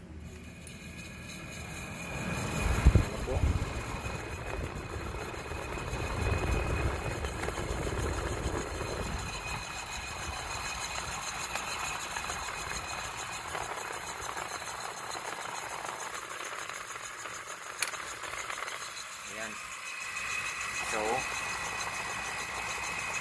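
Window-type air conditioner switched on after reprocessing. There is a louder low surge about three seconds in as the compressor starts, then the compressor and fan run with a steady hum.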